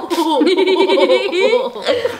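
A girl laughing hard, a quick run of high-pitched giggles.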